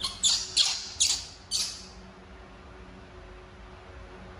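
Baby monkey crying out in five short, shrill squeals in quick succession as it squirms on the floor.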